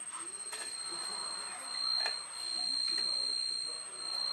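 Faint voices in the background under a steady high-pitched whine, with a couple of light clicks.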